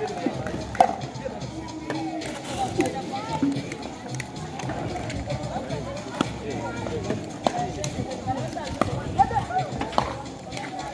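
Voices of onlookers and music in the background, with a few sharp pops of pickleball paddles striking the ball now and then during a rally.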